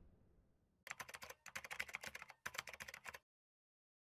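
Faint, rapid keyboard-typing clicks, a typing sound effect. They start about a second in, pause briefly, and stop a little after three seconds.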